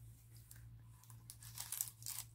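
Paper and card rustling and scraping as a small card is slid into a paper pocket of a handmade journal, faint at first and busier in the second half. A low steady hum runs underneath.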